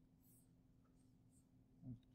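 Near silence: a faint steady room hum with two faint, short swishes of a stylus stroking across a drawing tablet.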